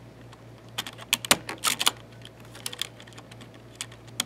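A handful of irregular sharp plastic clicks as a Shift keycap is pressed down onto its mechanical switch and stabilizer on a Razer BlackWidow Ultimate 2013 keyboard.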